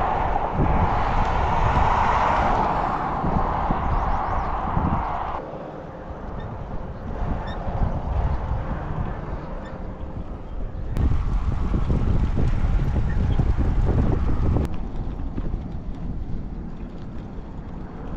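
Wind buffeting the microphone of a camera on a moving bicycle, a steady rumbling noise. A passing vehicle's tyre hiss rises over it for the first few seconds, then drops away.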